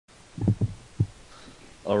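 Three short, low thumps within the first second, then a man's voice begins near the end.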